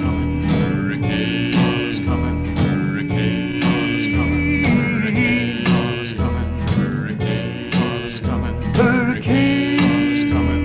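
Early-1960s folk-trio record playing a guitar-backed passage between sung lines, with a steady strummed beat and long held notes in the first half and again near the end.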